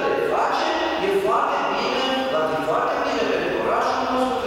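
Speech only: a man talking steadily in Romanian at a press conference microphone.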